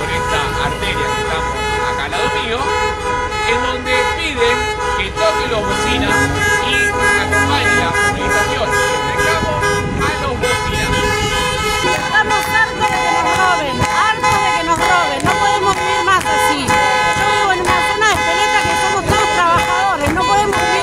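Car horns honking from passing traffic, several horns held and overlapping, as drivers answer a street protest with a bocinazo. A crowd shouts and cheers over them, with clapping.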